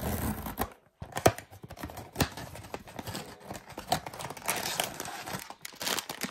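A blind box's packaging being torn open by hand: irregular tearing and crinkling with scattered sharp clicks, pausing briefly about a second in.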